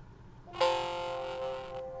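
A computer alert chime: several steady tones that start sharply about half a second in and ring for about a second before fading. It comes as the PLC software finishes downloading the program to the controller.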